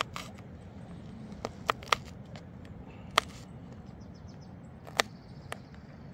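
Kitchen knife dicing a green pepper on a plastic cutting board: a handful of sharp, irregular taps of the blade on the board, three of them in quick succession about one and a half seconds in.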